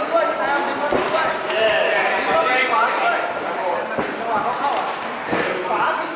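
Crowd and cornermen shouting over one another at a boxing bout, with a few sharp thuds of gloved punches landing.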